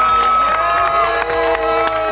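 A crowd of people cheering and whooping with long held shouts, with clapping mixed in.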